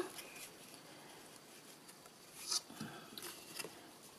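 Cardstock being handled and folded on a desk: mostly quiet, with a brief faint papery rustle about two and a half seconds in and a few soft light taps after it.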